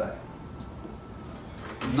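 A pause in a man's talk: low classroom room tone, with a faint knock near the end.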